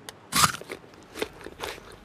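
A crisp bite into an apple about half a second in, followed by a few softer crunching chews.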